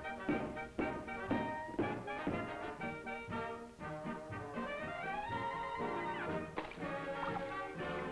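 Orchestral cartoon score with brass, punctuated by sharp accented hits in the first couple of seconds, then a rising slide about five seconds in and another sharp hit shortly after.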